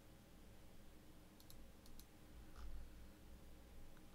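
Faint computer mouse clicks, two quick pairs about a second and a half in, then a softer one, over near silence.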